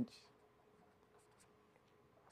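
Faint scratching of a pen writing on paper, in short strokes, over a low steady hum.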